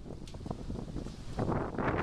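Wind rumbling on a camera microphone, with a few faint clicks early on and the noise growing louder about one and a half seconds in.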